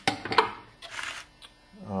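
Handling noise: a click, short rustles and a sharp knock in the first half second, then a brief rustle about a second in. A man starts speaking near the end.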